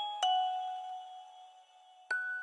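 Music box playing a slow melody: a single note is plucked about a quarter second in, ringing on with the one before it and fading away toward the end.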